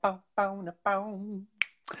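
A voice singing three short, steady notes of a chant-like phrase, followed by two sharp clicks near the end.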